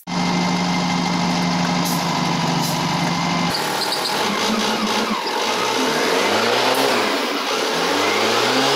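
Diesel engine of a Lingong (SDLG) wheel loader running under test after a gearbox repair. For the first three and a half seconds it holds a steady pitch, heard from the cab. After an abrupt change its pitch rises and falls as the machine is revved and driven.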